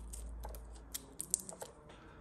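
Light, scattered small clicks and ticks of a plastic battery connector and its wire leads being handled, a few sharper clicks about halfway through.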